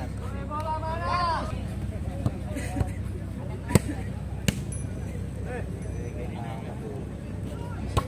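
A volleyball being struck by players' hands in play: several sharp slaps between about two and five seconds in, with another at the very end. A man's voice shouts at the start.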